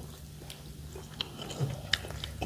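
A person chewing food close to a clip-on microphone, with a few soft mouth clicks and smacks over a faint, steady low hum.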